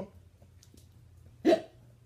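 A Siberian husky gives one short, sharp bark about one and a half seconds in, a bark given on the command to speak.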